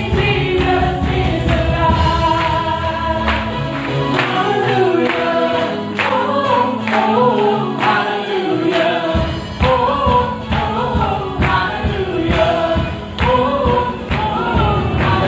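Live gospel praise-and-worship song: a small group of female and male singers in harmony over a band of guitars, keyboard and drums. The bass and low end drop out for a few seconds in the middle and come back in about nine seconds in.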